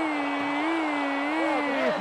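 A male sports commentator's long, drawn-out shout: one held note that wavers slightly in pitch and breaks off just before two seconds in.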